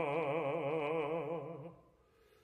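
Operatic baritone voice holding one long sung note with a strong vibrato, which stops shortly before the end.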